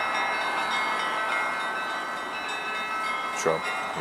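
Church bells ringing, heard as many overlapping steady tones, over a low hum of street traffic.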